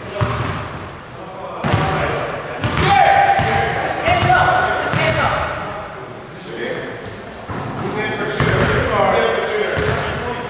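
Players' voices calling out and talking, echoing in a large gymnasium during a stoppage in a basketball game, with several sharp knocks of a basketball bouncing on the hardwood floor.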